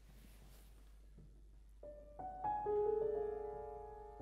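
Grand piano beginning a song's accompaniment after a couple of seconds of quiet: notes enter one after another about two seconds in and build into a held chord that slowly fades.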